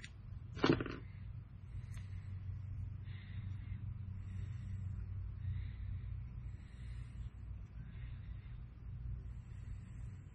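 Steady low room hum with faint, soft handling sounds as fingers work crystal flash on a jig hook held in a tying vise. A short, loud pitched sound cuts in once, about a second in.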